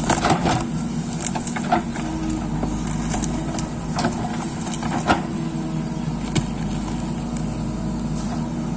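Backhoe loader's diesel engine running steadily under load while the backhoe arm digs soil, with sharp clanks and knocks from the bucket and arm, the loudest about five seconds in.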